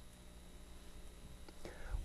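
A quiet pause in a man's talk: faint room tone with a low steady hum and a thin steady high-pitched tone. A faint sound rises near the end, just before he speaks again.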